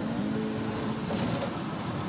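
Steady road noise inside a moving vehicle's cabin, with faint music playing.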